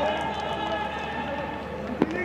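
Players shouting on a football pitch in an empty stadium, their calls carrying with no crowd noise behind them; the shouts are quieter toward the middle of the stretch.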